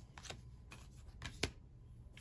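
Tarot cards being handled and slid across a table, with a few short sharp card taps, the loudest about one and a half seconds in.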